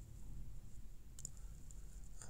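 Quiet background with a few faint, sharp clicks a little over a second in.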